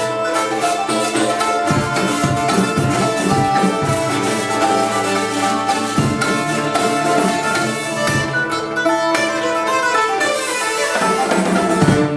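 Live folk ensemble of hurdy-gurdy, nyckelharpa, cittern and hand drums playing a lively tune: bowed melody over a steady drone, plucked strings and regular drum beats, with a loud closing accent at the very end.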